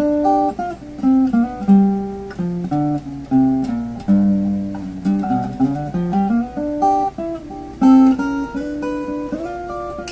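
Archtop acoustic guitar fingerpicked in standard tuning, playing a blues figure in the key of G: a bass line on the low strings under melody notes and partial chords on the treble strings.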